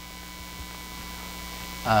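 Steady low electrical mains hum with a faint higher steady tone, heard in a pause in a man's speech. His voice comes back near the end.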